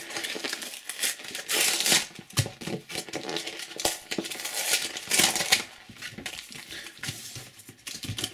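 Paper sticker packets crinkling as they are peeled one by one off a glued cardboard backing board, in short irregular bursts of rustling, with a few light taps as they are set down.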